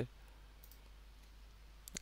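Faint computer mouse clicks over quiet room tone and a low steady hum: a click about two-thirds of a second in and another near the end.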